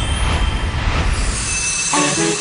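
A loud rushing, hissing noise over a deep rumble, with a faint thin high tone in it, fading out near the end. It is a whoosh-type transition effect between scenes.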